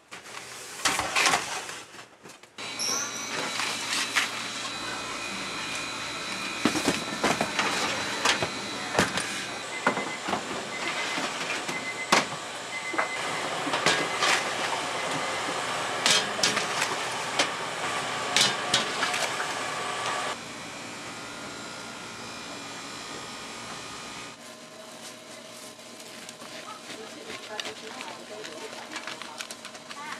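Busy bakery workroom sound: background voices over a steady hum, with scattered sharp clicks and knocks. The sound drops in level twice, after about twenty seconds and again a few seconds later.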